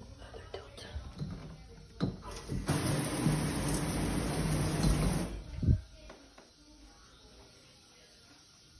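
Shower turned on briefly: water spraying from the shower head in a steady hiss for about two and a half seconds, starting and stopping abruptly, followed by a single knock.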